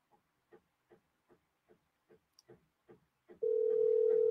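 Studio telephone line being put through for an incoming on-air call: faint ticking about four times a second, then a steady single telephone tone for about a second near the end.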